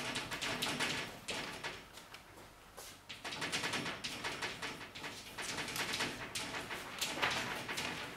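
Chalk tapping and scraping on a blackboard as words are written: a quick, irregular run of clicks and strokes, easing off briefly about two seconds in.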